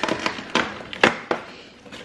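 Cardboard advent calendar door being torn open by hand: a run of sharp clicks and crackles, the loudest about a second in.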